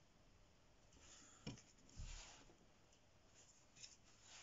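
Faint, short scratchy strokes of a fine-pointed synthetic sable brush on watercolour paper, with a light click and a soft bump near the middle.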